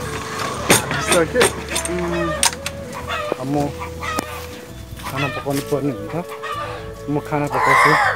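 Domestic chickens clucking and calling, with a louder call near the end of the stretch.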